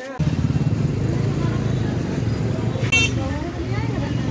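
Street traffic noise: a motor vehicle engine running close by starts suddenly just after the beginning, with a brief high-pitched horn toot just before three seconds in and people's voices underneath.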